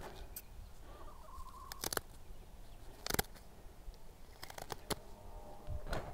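Sharp scissors snipping through a hen's long flight feathers to clip her wing: several quiet, crisp cuts at irregular intervals.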